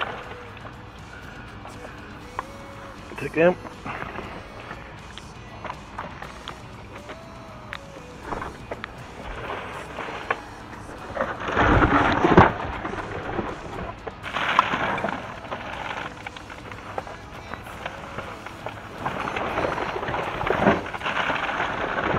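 Cardboard boxes and plastic bags being shifted and pulled about inside a bin: a few bursts of scraping and rustling, the loudest about twelve seconds in as a box is moved aside.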